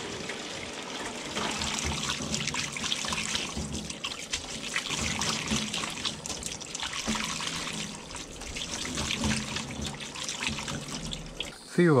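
Well water running from a hose into a metal colander of boiled noodles in a stainless-steel sink, splashing steadily while hands rinse the noodles.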